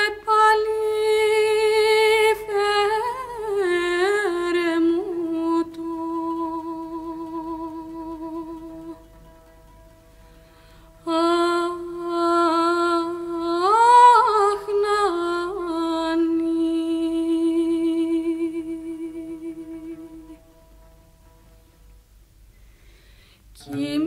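A woman singing a slow traditional lullaby: two long phrases of held notes with gliding pitch bends, separated by a pause of about two seconds, over a faint steady accompanying tone that carries on when the voice stops near the end.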